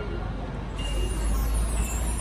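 Steady low rumble of road traffic between songs, with no music playing.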